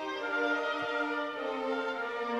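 Slow classical music for orchestral strings, with violin carrying long held notes that move smoothly from one to the next.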